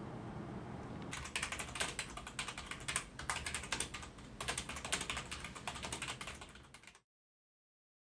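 Fast typing on a computer keyboard, a dense run of key clicks that starts about a second in, after low room hum, and cuts off suddenly near the end.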